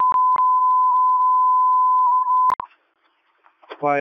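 A steady single-pitch radio alert tone, held for about two and a half seconds and cut off with a click, heard over a scanner. It is the emergency alert from a portable radio's distress button, set off in a test.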